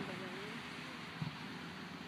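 Faint, steady outdoor background noise with a single soft knock about a second in.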